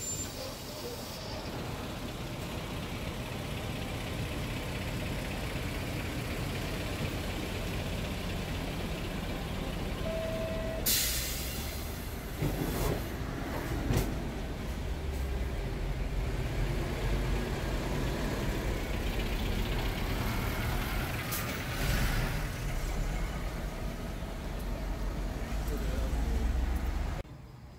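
City street traffic at night: a steady rumble of passing vehicles, with a sharp hiss about eleven seconds in and a few short knocks.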